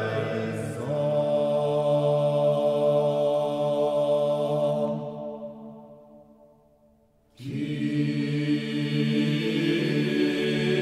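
Vocal ensemble singing the Kyrie of a Renaissance polyphonic Requiem: low, long-held chords that die away in a reverberant tail about five seconds in, a moment of near silence, then the voices come in again together a little past seven seconds.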